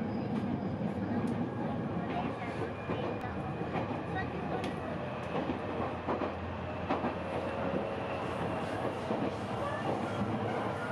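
Steady rumble and rattle inside a moving train carriage, with scattered clicks and faint voices in the background.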